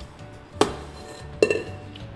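Stainless steel stand-mixer bowl being handled and set down: two sharp metallic clanks about a second apart, each with a short ring.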